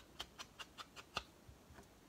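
A quick run of faint, light taps, about five a second, the loudest about a second in, then thinning out.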